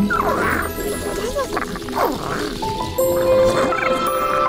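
Cartoon lizard-creature cries, a few swooping calls that mostly fall in pitch, over the background music score. The music swells fuller in the last second.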